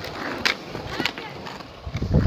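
Skateboard wheels rolling over rough asphalt with a steady rumble. Sharp clicks come about half a second and a second in.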